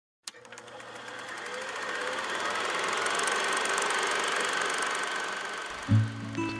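Old film projector sound effect: a mechanical whir with fast, even clicking that swells up over about three seconds and then fades, opening on a single click. Music comes in right at the end.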